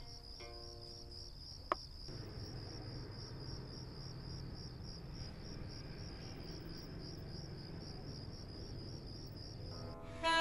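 Crickets chirping steadily at night, a high, evenly pulsing trill, with a single sharp click about two seconds in.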